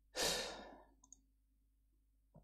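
A man sighs: one heavy breath out close to the microphone, loud at first and fading over about half a second. A couple of faint clicks follow about a second in.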